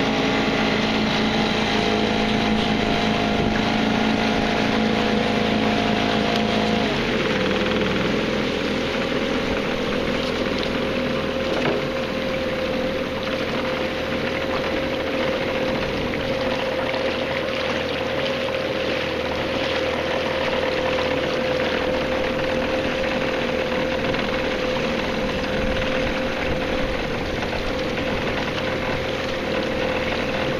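A small boat's motor running steadily under way, over water and wind noise. About seven seconds in its note changes and settles to one steady hum.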